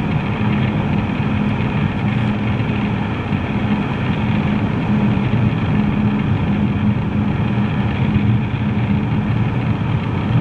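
Steady road and engine noise heard inside a moving car's cabin, a constant low drone with tyre rumble.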